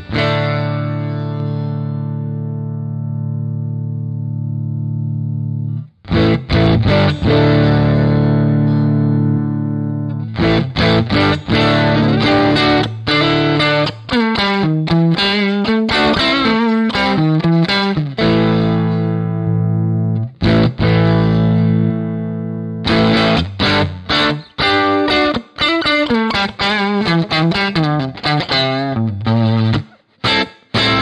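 Fender Stratocaster played through a Carl Martin PlexiRanger overdrive pedal, giving a driven, treble-boosted tone. A chord rings out and slowly fades, a second chord follows about six seconds in, then fast single-note runs and more chords. It demonstrates the low-cut toggle taming the bass that the boost adds.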